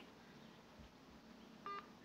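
Near silence, then one short electronic phone beep about three-quarters of the way in, as the call is hung up.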